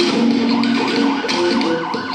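Music soundtrack with a police-siren sound effect: a quick warbling wail, about five sweeps a second, over steady musical notes.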